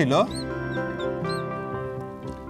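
Felt-tip marker squeaking in several short chirps as it writes on a glass writing board, over a steady background music bed.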